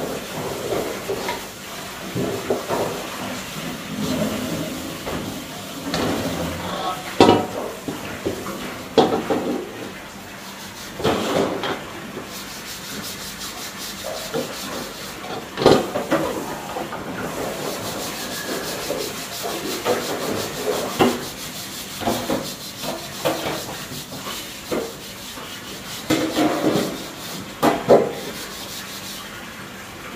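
Soft broom sweeping a hard floor in repeated brushing swishes, with a few sharp knocks along the way.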